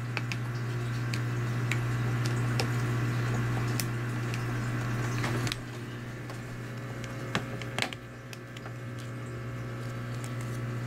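Fingers prying the plastic back cover off an HTC EVO 4G LTE smartphone: scattered small clicks with rubbing and rustling, busier in the first half, over a steady low hum.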